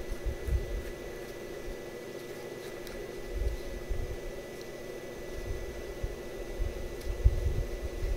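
Steady background machine hum with a thin high whine over it, and irregular low rumbles now and then.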